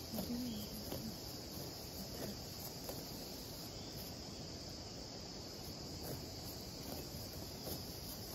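Steady high-pitched chirring of insects, with faint rustles and snips of grass being cut by hand.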